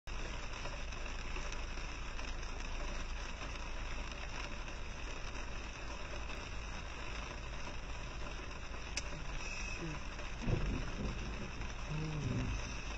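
Heavy rain on a car's roof and windshield, heard from inside the cabin as a steady hiss. About ten and a half seconds in there is a short, loud, low burst.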